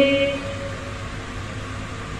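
The end of a woman's long, flat-pitched drawn-out syllable, fading within the first half second. Then a pause with only a low steady hum.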